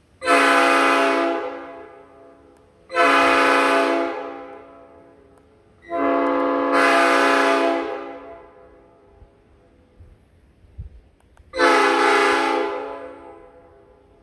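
Genuine Nathan AirChime P5 five-chime air horn sounding its chord in four loud blasts, each starting sharply and fading away over a second or two. The third blast is the longest, and the last comes after a longer pause.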